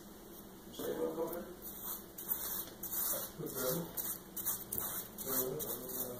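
Faint, muffled chatter of two men talking in another room, heard in scattered bursts.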